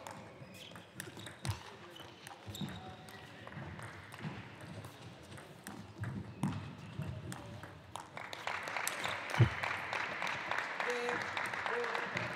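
Table tennis rally: the ball clicks off bats and table in quick irregular strokes. About two-thirds of the way through, the point ends and the arena audience breaks into clapping and voices, with one heavy thump just after.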